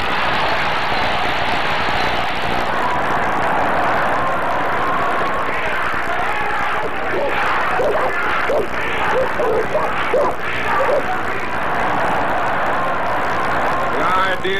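A large crowd cheering and clapping in a steady wash of noise, with single shouted voices standing out of it through the middle.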